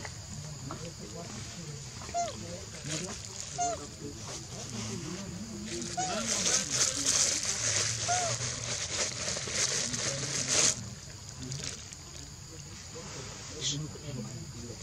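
Outdoor forest ambience: a low murmur of distant voices, a few short high chirps spaced a couple of seconds apart, and a loud rasping hiss from about six seconds in that cuts off suddenly near eleven seconds.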